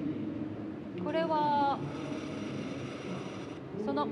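Recorded fountain-pen writing sound played back by a writing-feel tablet as a stylus draws: a faint scratchy hiss from about a second in that stops sharply near the end. A short voice sound comes briefly about a second in, over hall murmur.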